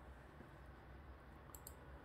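Near silence: room tone, with a faint double click about one and a half seconds in, as the lecture slide is advanced.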